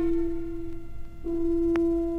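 Orchestral strings holding one long steady note in an arrangement of a Catalan folk tune, fading briefly and played again just over a second in, with a single faint click near the end.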